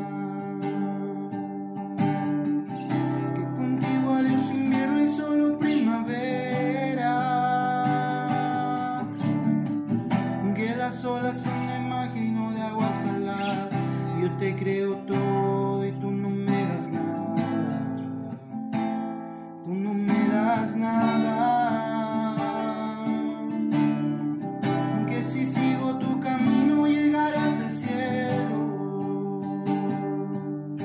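A man singing a slow ballad while strumming chords on an acoustic guitar, with a brief lull in the playing about two-thirds of the way through.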